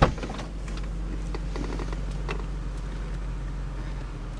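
A car door latch clicks open at the start, then the BMW X5's V8 engine idles steadily under a light haze of noise with a few faint ticks.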